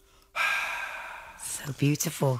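The last note of a ukulele fades out, then a breathy sigh of about a second begins suddenly, close to the microphone. Speech starts near the end.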